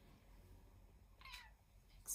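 A small cat gives one short meow about a second in, falling slightly in pitch, over near silence.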